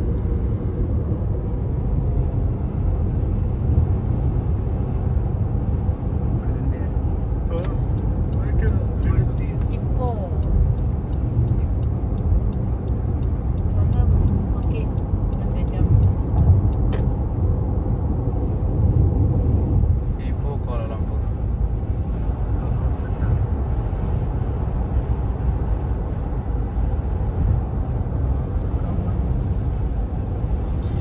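Road and engine noise heard inside the cabin of a car driving at expressway speed: a steady low rumble with a few faint clicks.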